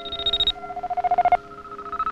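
Electronic synthesizer music: rapidly pulsing beeps that jump between a high and a lower pitch, over held lower notes.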